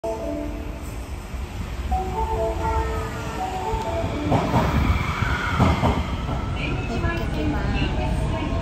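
Osaka Metro Midosuji Line subway train pulling into the platform: a steady rumble with a motor whine that sweeps up and then down. Held musical notes play through the first half.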